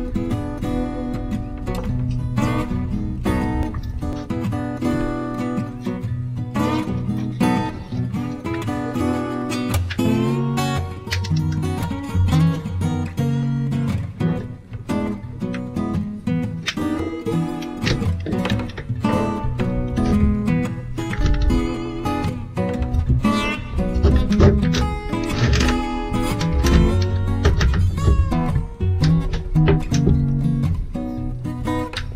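Background music led by strummed acoustic guitar.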